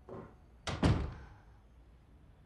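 Two sharp knocks in quick succession just under a second in, fading out briefly after the second and louder one.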